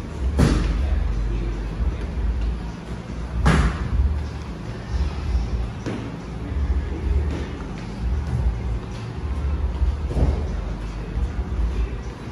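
Background music with heavy bass. Two sharp thuds come about half a second and three and a half seconds in, with fainter ones later.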